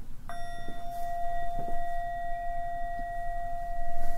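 A singing bowl struck once about a quarter-second in, then ringing on with a steady, sustained tone of several pitches.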